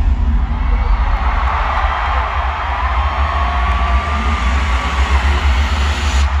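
Deep bass pulsing through an arena sound system in a dark stage transition, over the noise of a large crowd. A thin held tone rises faintly and holds for a couple of seconds in the middle.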